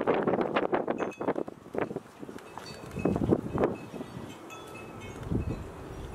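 Gusts of wind buffeting the microphone, with faint high ringing tones like a wind chime in the middle.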